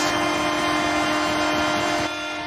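Arena goal horn sounding steadily over a cheering crowd, signalling a goal just scored.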